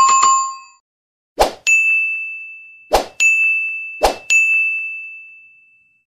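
Subscribe-button animation sound effects: a short chime at the start, then three times a sharp click followed by a bright bell-like ding, each ding ringing on and fading away.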